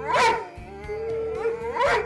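Rhodesian Ridgebacks howling, with long rising-and-falling calls, one just after the start and another near the end, over a held steady note.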